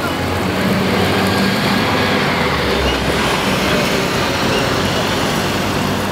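Street traffic on a wet road: a steady wash of tyre and engine noise with a low hum running under it.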